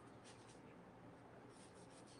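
Faint scratchy strokes of a watercolor brush on paper over a low room hum, in two short clusters: one just after the start and one from about a second and a half in.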